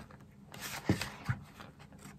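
Sheets of a scrapbooking paper pad rustling as the pages are leafed through by hand, with a couple of soft taps about a second in.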